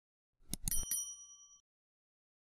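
Subscribe-button animation sound effect: a few quick mouse-style clicks, then a bright bell ding that rings for under a second as the notification bell icon appears.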